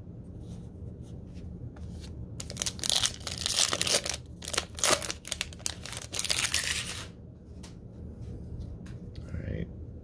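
The plastic wrapper of a Chronicles basketball trading-card pack being torn open and crinkled, in a few seconds of irregular tearing and crackling from about two and a half seconds in until about seven seconds in.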